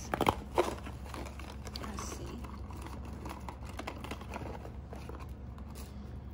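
Handling noises as a small cardboard box of plastic shoe charms is opened and tipped out: a few sharp clicks and rustles in the first second, then soft scattered clicks and rustling over a steady low room hum.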